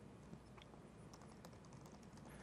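Faint typing on a laptop keyboard: a scattering of soft key clicks over a low, steady room hum.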